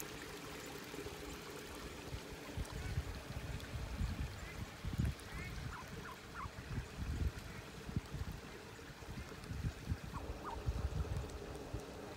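Shallow lake water lapping and trickling among rocks, with irregular gusts of wind rumbling on the microphone. A few faint short chirps come about halfway through and again near the end.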